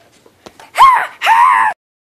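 A girl's two loud, high-pitched vocal squeals: a short one that rises and falls, then a longer, slightly wavering one that cuts off abruptly.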